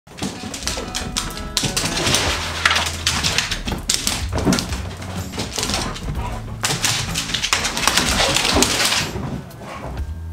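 Two dogs play-fighting: a run of rough, noisy bursts that eases off about nine seconds in.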